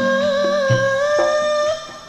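A singer holding one long sung note through a stage PA, the pitch wavering slightly, over instrumental backing with steady low notes; the sound fades down near the end.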